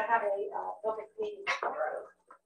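People talking, the words not clear.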